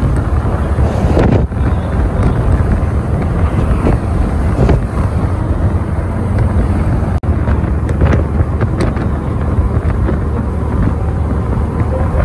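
Wind buffeting the microphone at the window of a moving city bus, a loud steady low rumble mixed with the bus's road noise, with a brief dropout about seven seconds in.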